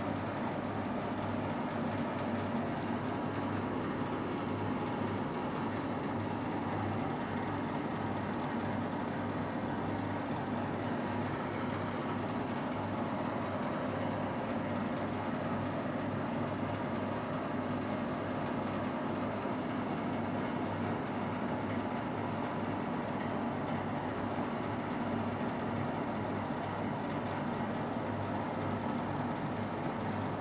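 Steady background hum and hiss of room tone, with a low drone and no distinct events.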